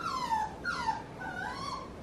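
Cavapoo puppy crying in its playpen: about four short, high whines, each sliding down in pitch. He is crying at being shut in the playpen while his owner is out of reach.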